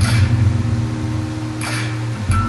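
Low, steady rumbling drone of a film trailer's soundtrack, played from a TV and picked up by a phone's microphone, with a short whooshing rush near the end.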